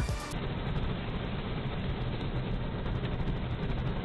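Steady engine and road noise of a car driving fast, muffled and dull as if recorded on a low-quality in-car camera.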